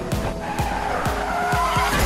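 Car tyres squealing in a skid, the squeal wavering in pitch through the second half, laid over an electronic dance-remix beat with fast, even drum hits.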